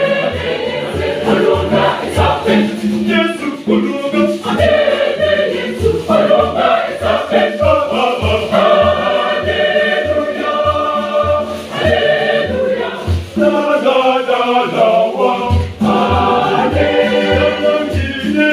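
A mixed choir of men and women singing a gospel song, with a pair of conga drums keeping a steady beat of about two strokes a second.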